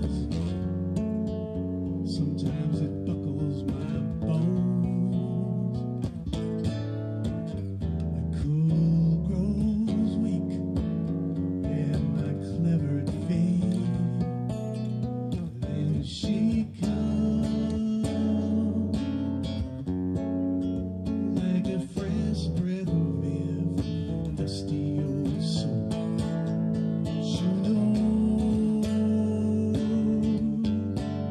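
A song played live on a solo acoustic-electric guitar, with chords and picked notes running on without a break.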